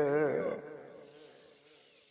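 A man singing a Saraiki folk song, holding a wavering note with vibrato that fades out about half a second in, followed by a faint steady hum.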